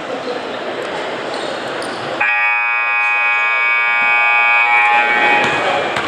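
Gym scoreboard horn giving one long, steady blast of about two and a half seconds, starting about two seconds in, over the chatter of the gym. It calls the teams out of their huddles to start the game.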